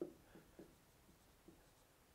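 Marker pen writing on a whiteboard: a string of short, faint strokes and taps, the sharpest right at the start.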